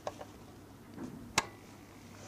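A sharp switch click about halfway through, with a few fainter clicks just before it, as a sodium lamp's demonstration unit is switched on, over a faint steady low hum.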